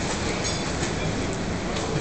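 Steady, echoing noise of an indoor swimming pool hall, with light splashing from a child kicking while floating on her back.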